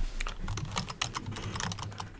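Typing on a computer keyboard: a quick run of keystroke clicks entering a short word.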